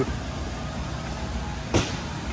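Steady low rumble of the air handling in a refrigerated walk-in produce room, with a single short knock about three-quarters of the way through.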